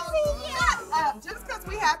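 Several people greeting each other at once, high excited voices and squeals overlapping, over background music with a steady low beat.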